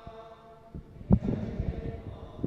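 Faint sustained group chanting of a prayer. About a second in comes a sharp thump, the loudest sound, followed by a run of low knocks and rumbles.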